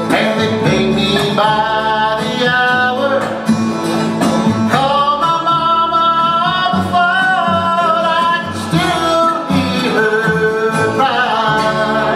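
Bluegrass band playing live, acoustic guitar, upright bass and dobro with plucked strings, while a man sings the melody over it.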